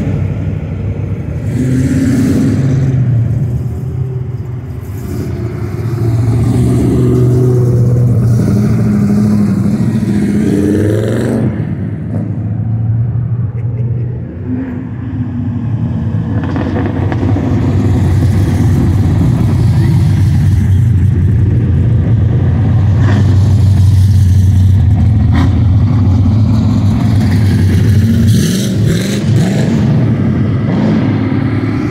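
Engines of several cars running at low speed in a street cruise, with a rise in revs about a third of the way in and again near the end.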